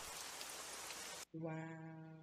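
Steady rain ambience hissing under the end of an animated horror story's soundtrack. About a second and a half in it cuts off and a woman says a drawn-out 'wow', which is the loudest sound.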